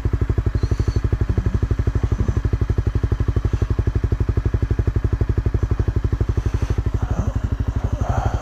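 Dual-sport motorcycle engine idling steadily, an even, rapid pulse of about ten beats a second.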